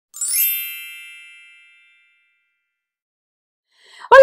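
Intro sound effect: a bright, sparkly chime that sweeps quickly upward, then rings on and fades out over about two seconds.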